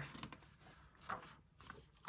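Faint rustling of a glossy magazine page being turned over, with a soft brush of paper about a second in.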